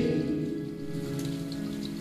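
Soft electric keyboard chords sustaining and fading between sung lines of a slow ballad.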